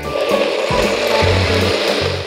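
NutriBullet personal blender running loud and steady, its blade whirring and grinding through a smoothie of crushed ice, banana, peanut butter and milk.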